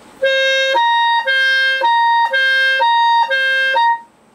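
Clarinet playing a smooth legato figure that alternates a lower D with the C high above it, about two notes a second, each note held steadily. It is a wide leap across the registers that needs coordinated fingers.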